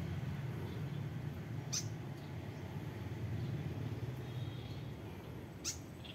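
A small bird gives two short, sharp high calls that sweep down in pitch, about four seconds apart, over a steady low hum.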